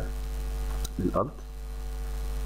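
Steady low electrical mains hum on the recording, with one short sharp click a little under a second in.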